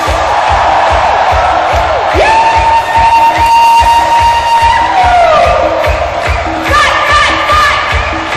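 Live pop concert music with a steady kick-drum beat, about two beats a second, over a cheering crowd. A long held high note enters about two seconds in and slides down a few seconds later.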